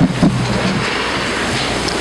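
A long, steady breath rushing into a close microphone, heard as a loud windy noise with a low rumble from the air striking the mic.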